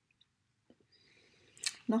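Near silence with a few faint ticks, then a soft breath and a sharp mouth click near the end as a woman's voice starts speaking.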